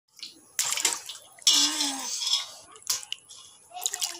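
Water splashing in a stainless steel bowl in several short bursts as hands grab at a thrashing orange fish.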